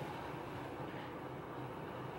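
Quiet, steady room tone: a low, even hum with no distinct events.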